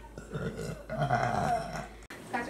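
A girl burping twice: a short belch, then a longer, drawn-out one.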